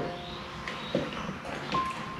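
A few light knocks and handling noises as a used paper coffee filter is put into a plastic bowl.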